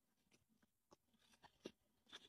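Near silence with a few faint, short ticks, the most distinct about one and a half seconds in.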